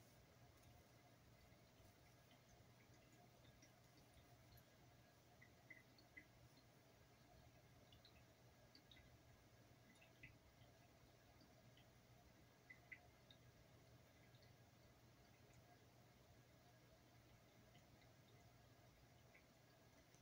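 Near silence: room tone with a faint steady hum and a few faint, tiny ticks.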